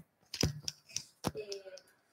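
A few sharp clicks and small knocks, the loudest two a little under a second apart, then a brief hesitant 'eh' from a voice near the end.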